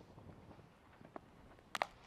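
Faint open-air background, then near the end a short, sharp crack of a cricket bat striking the ball.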